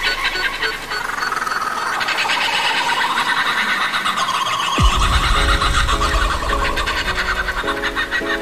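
Frenchcore electronic track built on sampled bird chirping and squealing, with a short 'boop' vocal sample. Just under five seconds in, a falling sweep drops into heavy bass and chopped synth chords.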